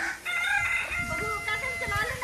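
A rooster crowing, one long call held steady for over a second.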